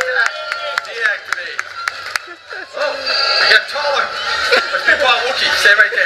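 Voices and music played over a loud sound system, with a quick run of sharp clicks in the first two seconds and a few more scattered later.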